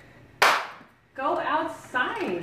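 A single sharp bang about half a second in, dying away quickly, then a person's voice calling out.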